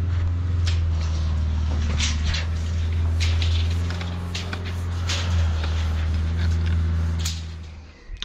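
A motor vehicle's engine running steadily as a low hum, fading out near the end, with a few light clicks and knocks over it.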